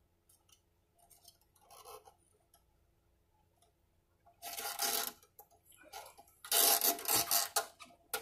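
A nylon guitar string being handled and drawn through at the headstock tuner: faint small ticks, then two loud scratchy rubs, one about halfway through and a longer one near the end, as the string is worked through and pulled.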